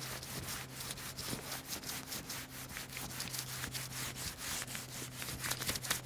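Side of a crayon rubbed back and forth across paper taped over a gravestone: an even run of quick scratchy strokes, several a second.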